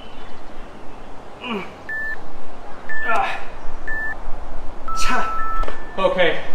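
Workout interval timer beeping: three short beeps about a second apart, then a longer beep near the end that marks the end of the 40-second work interval. Between the beeps, a man breathes and grunts hard with effort.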